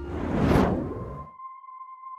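A whoosh transition sound effect: a rush of noise that swells and dies away over about a second, followed by a faint steady tone.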